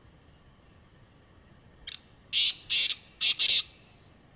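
A black francolin calling: one short note about two seconds in, then four loud, harsh, grating notes in quick succession, the whole call over in under two seconds.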